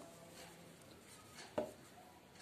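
Hands folding velvet fabric on a tabletop: mostly quiet handling, with one light tap late on.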